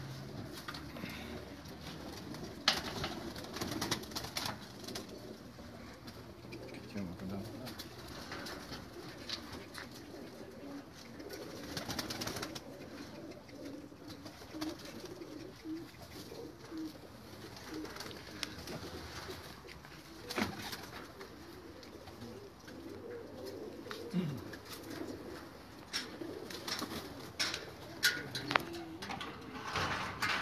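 Domestic pigeons cooing in low, repeated warbles. Scattered short clicks and rustles come from a pigeon being handled.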